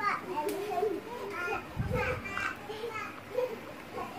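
Children's voices chattering and calling while playing in the background, with a short low thump about two seconds in.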